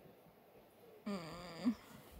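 A short wordless vocal sound, about two-thirds of a second long, just after a second in. It falls in pitch and flicks up at the end.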